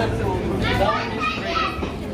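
People's voices chattering, not as clear words, with a fairly high-pitched voice from about half a second in to near the end.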